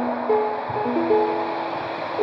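Ukulele being picked, a new note or chord sounding every few tenths of a second and ringing on. The instrument is slightly out of tune and sounds horrible.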